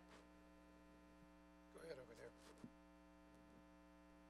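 Near silence with a steady electrical mains hum underneath, and a few quiet words spoken about two seconds in.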